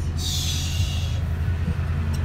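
Low, steady rumble of a 2015 Toyota Tundra's V8 idling, heard from inside the cab, with a brief hiss in the first second.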